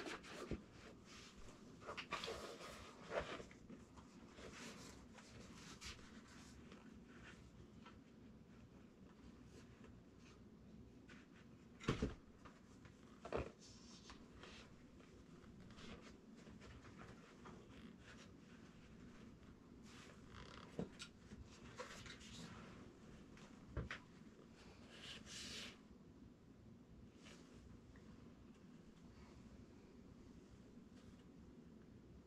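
Quiet workshop room with faint handling sounds of a seat cover being pulled and smoothed over a seat bottom: soft rustling and rubbing, two sharp knocks near the middle and a brief scraping rustle later.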